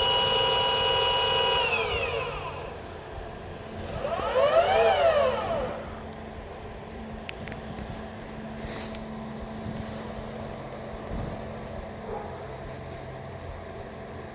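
Celestron Origin smart telescope's alt-azimuth mount motors whining as it slews to a target, very loud. A steady high whine falls in pitch and fades about two seconds in, a second whine rises and falls again around five seconds in, and then only a faint low motor hum remains.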